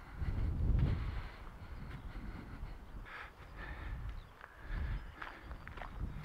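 Wind buffeting the microphone in low gusts, strongest in the first second, with faint footsteps scuffing on a dirt and gravel path.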